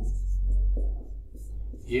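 Dry-erase marker writing on a whiteboard, over a low hum that is strongest in the first second.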